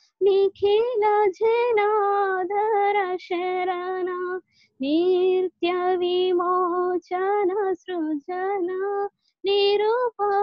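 A woman singing a melody solo without accompaniment over a Zoom call, in phrases broken by brief silences, with a longer pause about halfway through.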